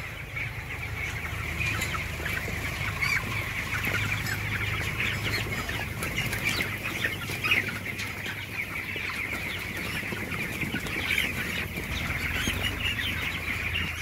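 A large flock of about 25-day-old broiler chickens calling continuously in a shed, many short high peeps overlapping into a steady chatter. A low steady hum runs underneath.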